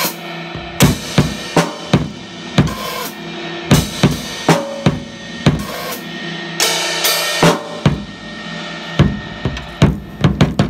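Acoustic drum kit played with wooden sticks: snare and tom strikes over bass drum, two to three hits a second, with cymbal crashes, the longest about seven seconds in.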